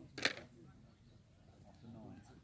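Cricket bat striking the ball once, a short sharp crack about a quarter of a second in, with faint distant voices on the field.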